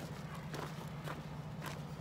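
Soft footsteps of a person walking, a step about every half second.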